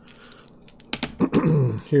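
Dice rolled onto a tabletop, with a few light clicks and a sharper click about a second in as they land.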